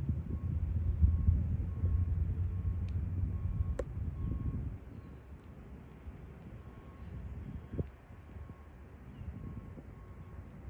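Low rumble of passing motor traffic, louder in the first half and fading about halfway through, with a faint high tone repeating at an even pace throughout.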